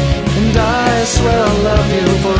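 Pop-punk rock song: a full band with a steady drum beat under a female voice singing a wavering, drawn-out line.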